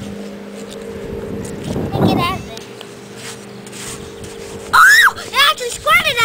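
A steady low motor hum, with several loud, high-pitched arching calls or cries near the end.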